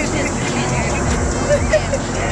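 Several voices talking at once over a loud, dense low rumble.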